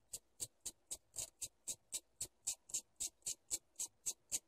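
Small hand-held wire wheel brush scraped across a steel clipper blade in quick, even strokes, about four a second. It is deburring the freshly sharpened edge, knocking back the burr raised on the stones.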